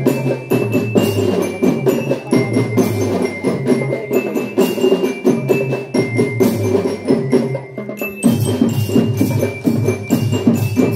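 Indonesian drum band playing: marching drums beat a busy, steady rhythm under a melody on bell-toned marching glockenspiels (bell lyres). The music thins out for a moment about eight seconds in, then carries on.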